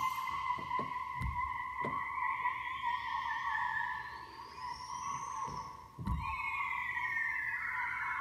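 Spacey electronic intro of the recorded song: a steady, wavering theremin-like tone with slow rising and falling sweeps above it. A few low thumps are heard along with it.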